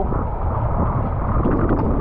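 Wind buffeting a camera microphone held at the sea surface, with choppy water sloshing around it: a steady low rush.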